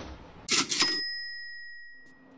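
Cash-register "ka-ching" sound effect: a short mechanical clatter about half a second in, then a bell ring that fades out over the next second or so.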